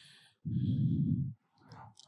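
A voice-over narrator sighs, breathing out heavily into a close microphone: one short, low breath about half a second in, lasting just under a second, with a faint intake of breath before it.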